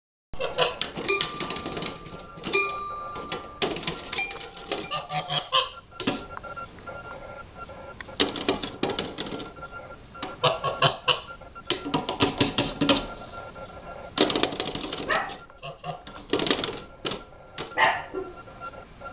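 Toy piano notes struck by a goose's bill: clusters of plinking keys in bursts every second or two as the goose pecks at the keyboard.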